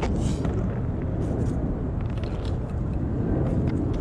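Steady low outdoor rumble, with a few faint scrapes or clicks about a second in and again near the end.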